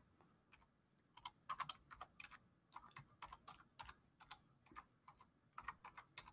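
Computer keyboard typing: a faint, irregular run of key clicks starting about a second in, several keystrokes a second with short pauses.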